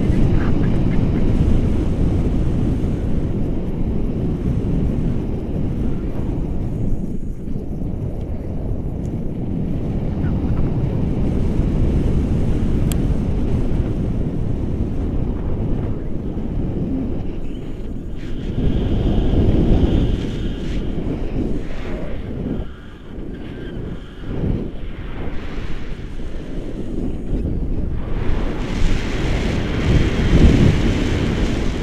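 Air rushing past the camera microphone in tandem paraglider flight: a steady low wind rumble that eases for a few seconds a little after the middle, then builds again.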